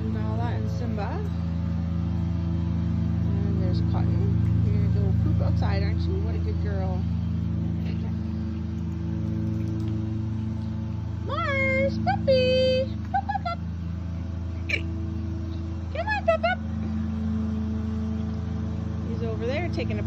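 A lawn mower engine running steadily in the background, a little louder about four to five seconds in. Over it come a few short, high-pitched yelps, the loudest about twelve seconds in and again about sixteen seconds in.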